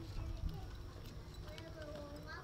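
Faint distant voices over a low background rumble, with a few small clicks.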